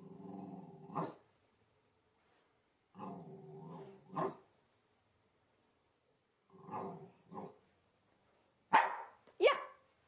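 West Highland White Terrier giving a low grumbling growl that ends in a short bark, three times over, then two louder, sharper barks near the end. It is barking on cue for a "speak" trick.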